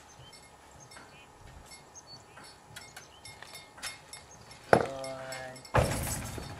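Horse's hooves on a trailer floor: scattered light knocks as she shifts her feet, a sharp knock near the end of the fifth second, then a loud clatter of hooves on the trailer floor in the last moments as she scrambles.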